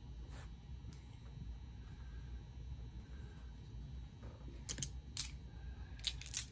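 Quiet handling at a tabletop, then a few small sharp clicks near the end as dice are picked up and rolled into a dice tray.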